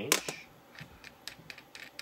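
Laptop keyboard being typed on: a string of faint, separate key clicks.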